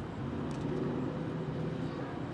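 Low, steady rumble of a passing road vehicle, swelling slightly in the middle.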